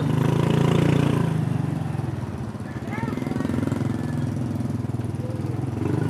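Small motorcycle engine running steadily under way, with a fast even pulse. A few short high chirps come about three seconds in.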